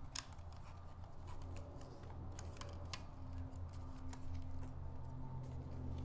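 Light, scattered plastic clicks and taps from handling a DJI Mavic 3 Classic drone as its folding arms are swung out, over a steady low hum.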